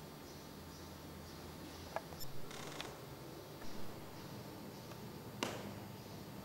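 Quiet indoor room tone with a steady faint hiss, broken by a few sharp clicks and two brief rustling noises; the sharpest click comes near the end.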